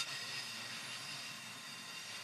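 Faint, steady running noise heard inside the passenger cabin of the Resort View Furusato, an HB-E300 series hybrid diesel train, while it is under way.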